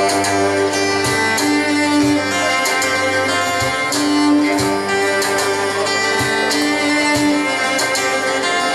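Live instrumental music in a Latin-Andean classical style: a bowed cello plays long held notes over strummed acoustic guitar, with a low bass line pulsing underneath.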